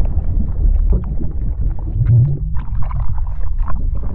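Water sound effects for an animated logo intro: a deep, steady underwater-style rumble with scattered bubbling and splashing.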